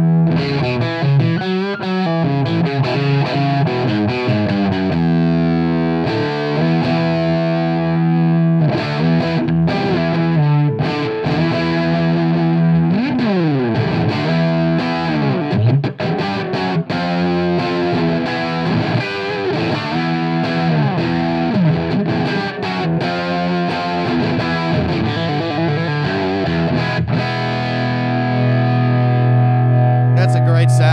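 Telecaster played through an Audio Kitchen Little Chopper hand-wired EL84 tube amp into a Marshall 4x12 cabinet, with a driven, distorted tone. It plays chords and single-note phrases, with pitch slides about halfway through, and near the end a held chord rings out.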